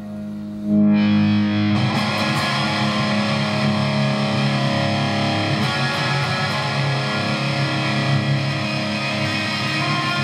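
Electric guitar played through heavy distortion: a held note dies away, a loud new chord hits under a second in, and busy riffing runs on from about two seconds.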